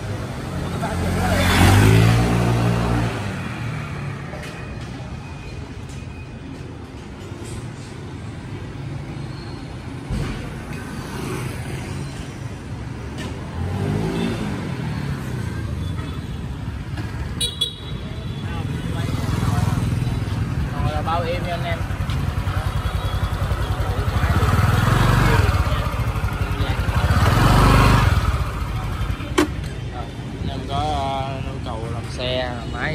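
Honda Vario 150 scooter engine, its CVT clutch freshly reworked, speeding up and easing off several times on a road test, its pitch rising and falling, amid street traffic. The loudest surges are about two seconds in and near the end.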